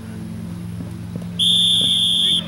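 Soccer referee's whistle blown once, a single steady high blast of about a second starting a little past halfway, stopping play as a player goes down.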